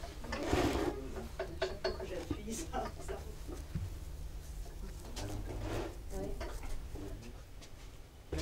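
Hands working wet clay in a mould: scattered soft taps, knocks and rubs, over a steady low hum, with faint voices in the background.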